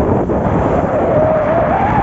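Steady, loud engine and hull noise of a motorized outrigger fishing boat under way. A wavering high tone, a squeal or call, rises in over the second half.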